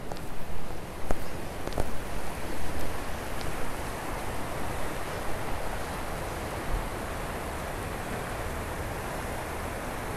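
Shallow mountain creek rushing over rocks in a steady, even rush. In the first few seconds it is mixed with uneven low rumble and a few soft knocks, and after that it holds steady.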